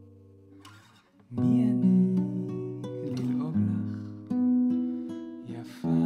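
Acoustic guitar playing strummed chords: a chord rings out and fades over the first second, then after a brief lull new chords are struck about a second and a half in, again around the middle, and just before the end.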